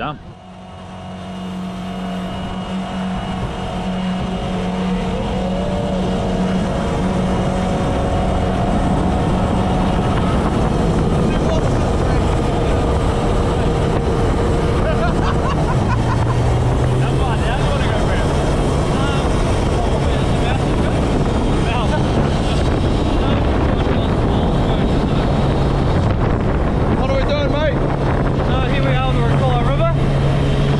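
Jet boat running at speed on the river: the engine and water jet build up over the first few seconds and then hold a loud, steady run, with rushing water and wind. The engine note settles lower about halfway through.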